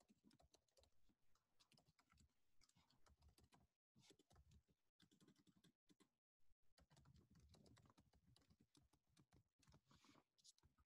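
Faint typing on a computer keyboard: irregular keystroke clicks, with a couple of brief complete dropouts around the middle.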